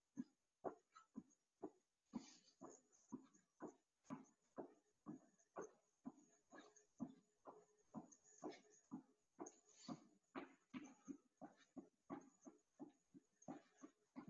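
Faint, regular thuds of feet landing on a rubber-matted floor during jumping jacks, about two a second.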